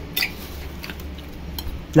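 A metal spoon clicking against a salad bowl: one sharp clink near the start, then a few faint ticks, over a low steady hum.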